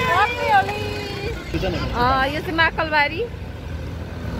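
Women's excited voices calling out and laughing, with a wavering laugh about two to three seconds in, over the steady low rumble of a motor scooter riding along.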